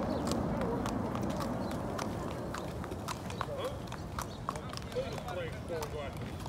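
Thoroughbred racehorse walking on a hard-packed road, hooves clip-clopping in an uneven walking beat, with people talking in the background.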